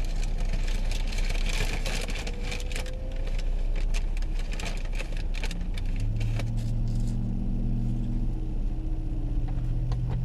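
Road noise and low rumble inside a moving car's cabin, with scattered clicks and rustles for most of the first seven seconds. From about six seconds in, a steady low engine hum joins.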